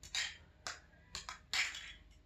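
Small plastic toy kitchen pieces being handled: about five short clicks and scrapes of plastic food and pots being set down and moved.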